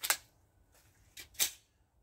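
Sharp clicks of a PSA Dagger 9mm pistol being handled: one at the start, then two more about a quarter second apart a little past a second in.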